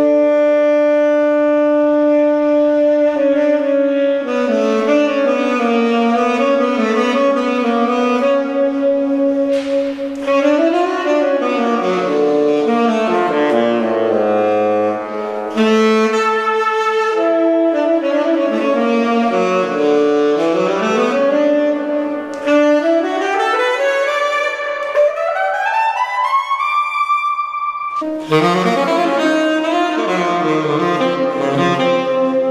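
Tenor saxophone with a Vandoren T35 V5 mouthpiece playing solo in a reverberant room: long held notes, then moving phrases and a line that climbs steadily higher. It stops briefly near the end, then starts a new phrase.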